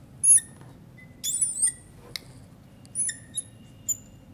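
Squeaks of writing on the board as a line and a circled equation number are drawn: a few short, high-pitched chirping squeaks that slide in pitch, one near the start and a cluster in the second half.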